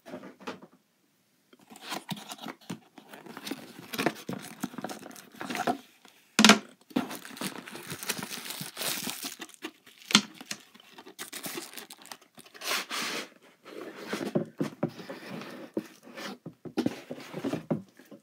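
A cardboard box being opened and unpacked by hand: cardboard rubbing and scraping, packing material crinkling, and a few sharp knocks, the loudest about six and ten seconds in.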